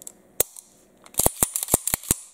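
Sharp metallic clicks of a Sig Sauer 1911 TacOps pistol being worked by hand in a function check after reassembly. There is one click, then a quick run of about eight clicks and snaps near the end.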